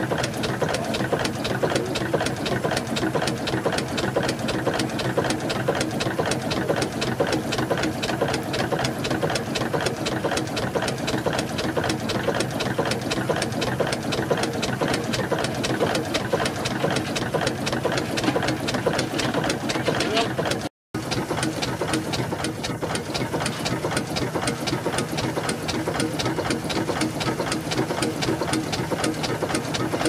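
Burrell Gold Medal steam tractor's engine running, its motion work giving a fast, even mechanical beat that is briefly broken by a short gap about two-thirds of the way through.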